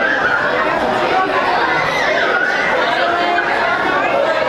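Crowd of people talking at once in a busy cafeteria: a steady babble of overlapping voices, with no single voice standing out.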